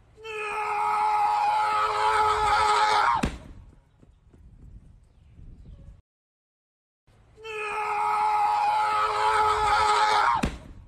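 A long, high, held scream of about three seconds that ends abruptly in a sharp knock, heard twice, the second time about seven seconds in.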